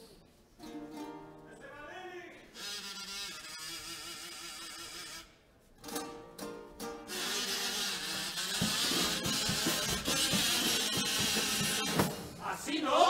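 Carnival murga performing: male voices singing to acoustic guitar, a brief break about five seconds in, then a louder, fuller passage with drum strokes.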